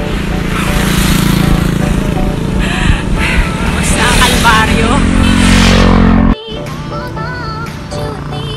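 Wind rumbling on the phone microphone while cycling on a road, with a motorcycle engine passing close behind, its pitch rising just before an abrupt cut about six seconds in. Background music with singing runs throughout and carries on alone after the cut.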